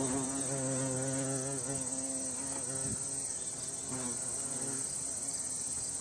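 Wing buzz of a wasp at its nest: a low hum that holds for about three seconds, then fades out. Behind it runs a steady high-pitched insect chirring.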